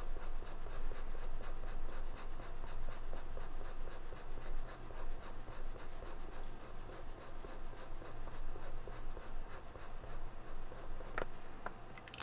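Soft flexible brush tip of a water-based Pentel Sign Pen Brush marker rubbing across paper in repeated short strokes, a steady scratchy swishing that rises and falls with each stroke. A couple of light clicks near the end.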